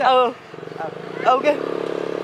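A motor vehicle engine running steadily with an even pulse, growing louder about a second and a half in, with short shouted calls over it at the start and just before it swells.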